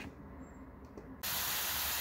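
Chopped onions sizzling in sunflower oil in a frying pan: a steady hiss that starts abruptly a little over a second in, after a moment of quiet.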